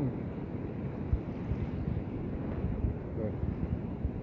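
Wind buffeting the microphone outdoors: a steady low rumble with irregular low thumps.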